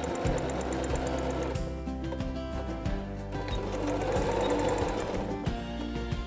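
Sewing machine stitching through zipper tape and fabric with a zipper foot, running in two spells: it stops about a second and a half in and starts again a couple of seconds later, backstitching at the end of the seam.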